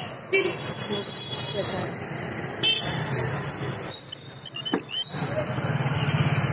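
Vehicle horns honking in street traffic: a high-pitched toot about a second in, and a louder one lasting about a second near the end, over street noise and people talking.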